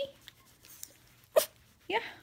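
A small dog makes one short, sharp sound about one and a half seconds in.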